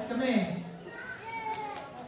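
Children's voices chattering, with no one addressing the group.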